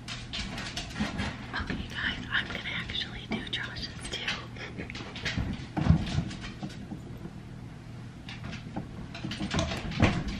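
Quiet whispered voices over scattered clicks and knocks of kitchen handling, with one louder thump about six seconds in.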